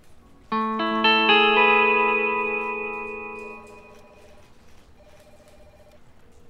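Background music sting: a chord whose notes come in one after another about half a second in, then rings out and fades over about three seconds.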